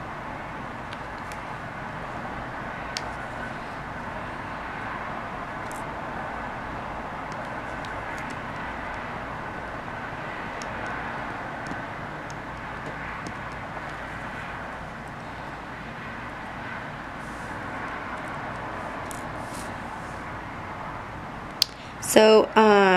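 Steady background rushing noise, with a few faint, scattered light clicks as resin diamond-painting drills are pressed onto the canvas with a drill pen.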